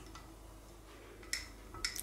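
Faint room tone broken by two short, light clicks about half a second apart near the end: kitchenware knocking as a glass beaker of melting beeswax and oil is handled and stirred with a wooden stick in a water bath.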